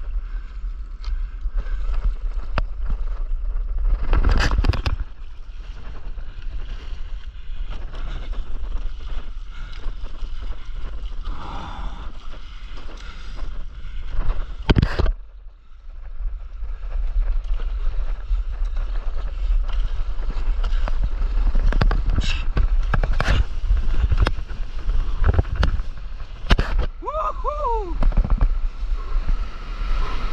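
Wind buffeting a camera microphone held at water level, with water sloshing and slapping against a stand-up paddleboard and several sharp splashes. Near the end a voice whoops as the board catches a wave.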